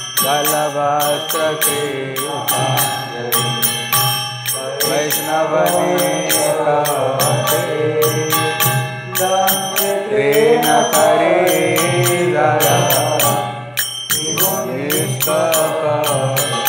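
Devotional kirtan: a voice singing a chant melody over a low steady drone, with hand cymbals (kartals) striking a steady beat of about four to five strokes a second. The singing breaks briefly about fourteen seconds in.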